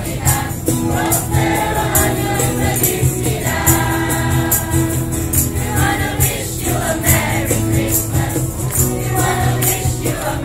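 A mixed group of carolers singing a Christmas carol together in unison. A jingling percussion instrument is shaken on the beat throughout.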